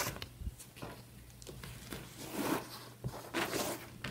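Handling noise of a sheet of craft foam being lifted and slid against a wooden board: a few soft rubbing, scraping noises with light clicks, the two loudest in the second half.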